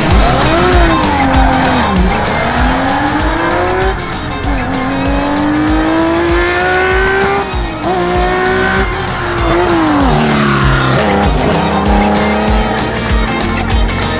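Porsche 911 2.0 S rally car's air-cooled flat-six revving hard through the gears, its pitch climbing and dropping at each shift, then falling as it slows about ten seconds in. Rock music with a steady drumbeat plays underneath.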